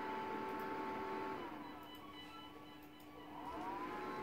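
Cutting plotter's stepper motors whining as the blade carriage and feed roller cut around printed transfer designs on a sheet. The whine drops in pitch and quietens about a second and a half in, then climbs back to its earlier pitch near the end as the motors speed up again.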